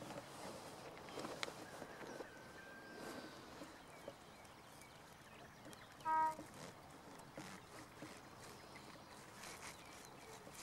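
Faint outdoor ambience with soft rustling from grass, and about six seconds in one short, loud animal call with a clear pitch.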